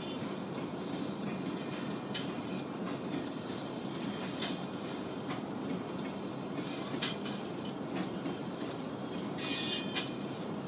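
Freight train covered hopper cars rolling past: a steady rumble of wheels on rail, with regular clicks about twice a second and a brief high wheel squeal near the end.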